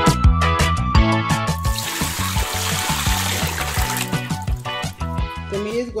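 Background music with a steady beat. About two seconds in, tap water runs into a sink for two to three seconds underneath the music.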